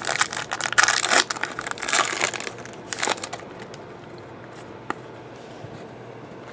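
Foil trading-card pack wrapper being torn open and crinkled in the hands, crackling in bursts over the first three seconds. It then dies down, with a single click near the end.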